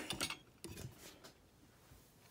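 A few faint knocks and rubbing sounds from a handheld camera being set down and settled on its stand, within the first second.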